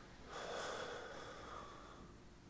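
A soft, breathy exhale from a person, rising about a third of a second in and fading out after about a second and a half, over faint background hiss from the call.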